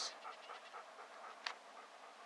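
A dog panting faintly, with a single sharp click about one and a half seconds in.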